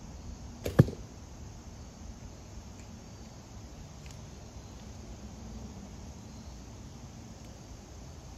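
Traditional Asiatic horsebow shot with a thumb release, loosing a full-carbon, feather-fletched arrow: one sharp, loud snap of the bowstring with a short low thrum, just under a second in. A much fainter click follows about four seconds in.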